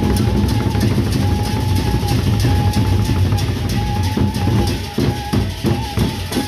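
Gendang beleq ensemble: several large Sasak barrel drums beaten with sticks in a fast, dense rolling rhythm, which breaks into separate heavy strokes in the second half. A steady high note is held over the drumming.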